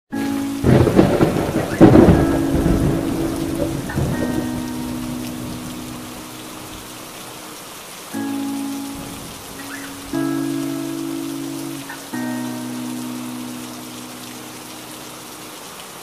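Steady rain with a loud thunderclap in the first few seconds. Under it, soft held chords from a song's intro change every couple of seconds.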